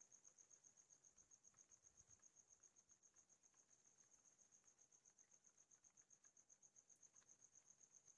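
Near silence with a faint, steady, high-pitched pulsing chirp, about six pulses a second.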